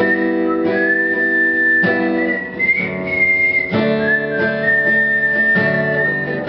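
Acoustic guitar strumming a slow pattern, with a new chord about every two seconds, under a high whistled melody of long held notes.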